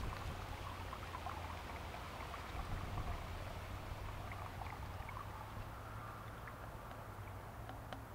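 Red-dyed water pouring in a steady stream from a plastic pitcher through a plastic funnel into a plastic infusion bag, faint, over a low steady hum.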